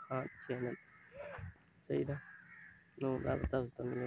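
A man speaking in short phrases, with one short bird call about a second in during a pause.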